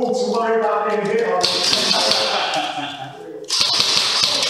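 Men's voices talking, cut across by a harsh hiss that starts suddenly about a second and a half in. After a brief drop, a louder hiss starts abruptly near the end.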